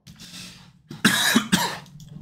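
A man coughing: a short, loud cough about a second in, in two quick bursts, after a faint breath.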